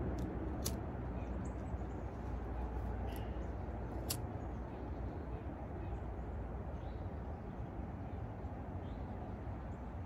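A thumb-struck lighter clicking a few times, sharp separate clicks about a second in and again about four seconds in, over a steady low rush of wind on the microphone. The outdoor breeze and cold make the lighter hard to get going on a strip of cedar wood.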